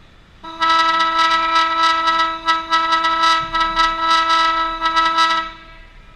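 Ice rink's horn sounding one long, steady blast of about five seconds, starting about half a second in.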